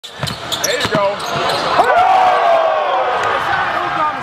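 Basketball gym sounds: balls bouncing on the court, with several sharp bounces in the first second and a half. Players' voices run underneath, with a drawn-out call about two seconds in.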